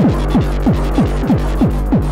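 Hardtek track playing from a 12-inch vinyl record: a fast kick drum, each beat sweeping down in pitch, about three beats a second over a steady low bass tone.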